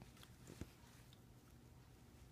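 Near silence: a baby's faint mouth sounds on a plastic feeding spoon, a few soft clicks and one brief low knock about half a second in, over a faint steady hum.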